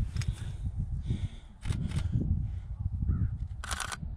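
Low rumble of wind on the microphone. Near the end comes a short burst of rapid sharp clicks from a camera shutter firing a quick series of frames.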